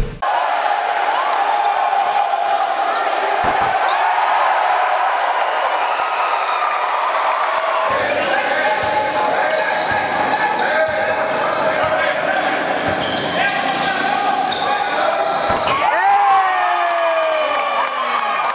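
Live basketball game sound in a gymnasium: the ball being dribbled on the hardwood court, with a steady background of crowd voices and a few squeaking glides from sneakers near the end.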